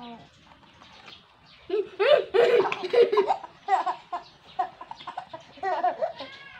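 A baby laughing, with an older child laughing along: after a quiet second or so near the start, a run of loud laughing peals, then shorter bursts toward the end.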